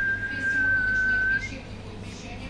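A single high whistled note, held for about a second and a half and sagging slightly in pitch, ending with a brief upward flick.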